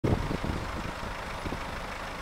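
BMW 520d's four-cylinder diesel engine idling with a steady low rumble, a little louder in the first half-second.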